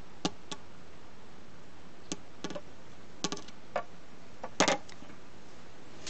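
Steel chainsaw guide bar clinking and knocking against the Stihl saw's body and mounting studs as it is flipped and fitted back on: a handful of scattered light clicks, the loudest a quick double knock about four and a half seconds in.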